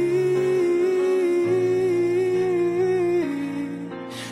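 Acoustic pop cover song: a voice holds one long note or hum with a slight vibrato over soft chords that change beneath it. Near the end the note steps down and the music gets a little quieter.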